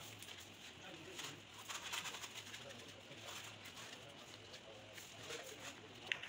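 Faint rubbing strokes of a hand pad smoothing a plaster arch, with a bird cooing faintly in the background.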